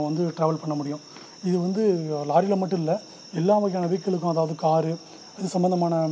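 A man talking in short phrases, over a steady high-pitched electronic whine that runs without a break.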